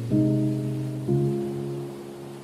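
Calm, soft piano music: a chord struck near the start and another about a second in, each left to fade.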